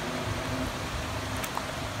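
Steady low hum with a hiss over it, and no distinct event.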